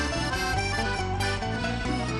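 Live Andean-fusion band playing an instrumental passage between sung lines: a steady drum-and-bass beat under held melodic notes.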